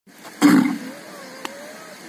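A Jallikattu bull, head down and digging at the ground with its horns, gives one short, loud, rough grunt about half a second in.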